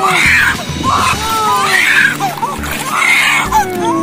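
A two-month-old baby crying hard in loud repeated wails, about one a second, as she is dipped into the sea for the first time.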